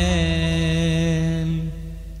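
Cantor's voice holding the long final note of a Jewish liturgical chant, with a slight waver, over a low held accompaniment tone. The note fades out near the end.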